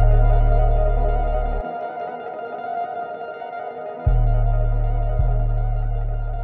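Trap beat instrumental: an echoing, effects-laden guitar melody over long decaying 808 bass notes. The 808 cuts out about a second and a half in and returns with two hits about four and five seconds in.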